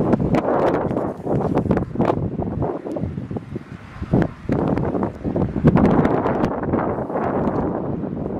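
Strong wind buffeting a handheld camera's microphone in uneven gusts, with scattered short crackles and knocks.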